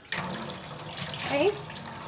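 Water running from a kitchen tap into a sink onto a steel pot being washed. The flow starts suddenly right at the beginning and runs on steadily.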